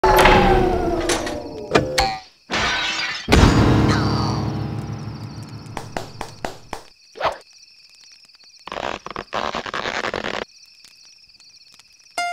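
Cartoon sound effects: a series of crashes and thuds, the loudest about three seconds in, with a long ringing tail that fades slowly. Scattered sharp knocks follow, then two short bursts of noise near the end.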